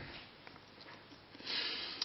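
Quiet room tone, then, about a second and a half in, a short breath drawn in through the nose just before speech resumes.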